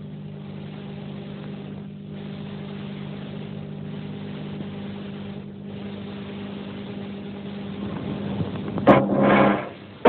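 A steady low drone with a hum in it, slowly growing louder, then a loud surging sound near the end.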